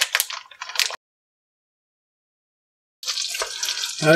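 Omelette sizzling and crackling in a frying pan. The sound cuts out to complete silence about a second in and returns for the last second.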